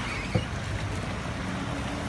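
A car driving slowly through a deeply flooded street: its engine running low and water sloshing around the wheels, with one brief knock about a third of a second in.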